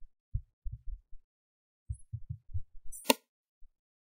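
Soft computer-keyboard keystrokes in short quick clusters, with one sharper click about three seconds in, as code is edited and pasted.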